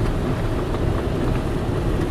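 Steady road noise inside a moving car's cabin: engine and tyres running on a wet highway, a continuous low rumble.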